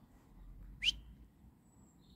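A single very short whistle-like chirp that rises quickly in pitch, a little under a second in, over a faint low rumble.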